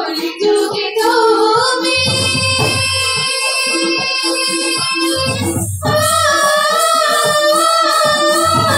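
Sambalpuri folk dance music: a female voice sings long, wavering held notes over a recurring drum rhythm, with a short break about six seconds in.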